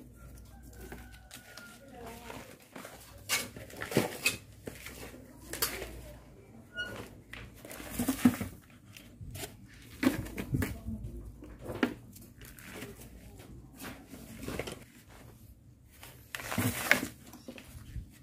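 A hand working and mixing loose potting soil and goat manure in a plastic pot, giving irregular scratchy rustles and crunches with a louder stroke every second or two.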